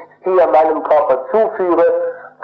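Speech only: a man talking in German, on an old lecture recording with a faint steady low hum beneath.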